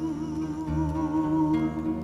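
A woman's voice hums one long held note with vibrato over acoustic guitar chords, fading out about a second and a half in as the guitar rings on: the closing bars of a bard song.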